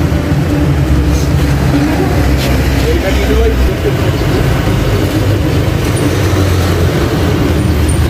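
A motor vehicle engine running close by, a steady low rumble that is strongest for the first few seconds and then eases a little, with faint voices underneath.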